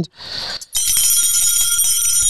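A short hiss, then a steady high ringing tone of several pitches held for over a second: an electronic bell or chime effect.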